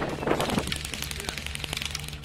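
Airsoft guns firing in rapid full-auto strings, a quick run of sharp clacks. They are densest about half a second in, with more near the end.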